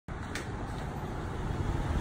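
Street ambience: a steady low rumble of city traffic, with one faint click about a third of a second in.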